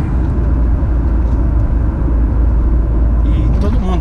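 Steady low rumble of a car driving along the road, engine and tyre noise heard from inside the cabin.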